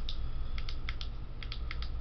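Handheld LED flashlight being handled and switched: about ten light, sharp clicks, many in close pairs, as its switch is pressed and released.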